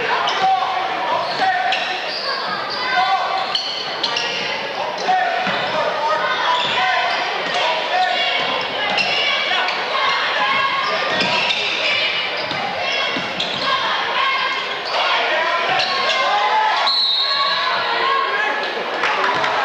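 A basketball bouncing on a hardwood gym floor during play, among voices of players and spectators that echo through a large gym.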